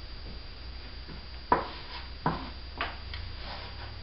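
Hands pressing and patting glued fabric onto a cardboard tube drum: three or four short knocks on the hollow tube in the second half, the first the loudest, over a steady low hum.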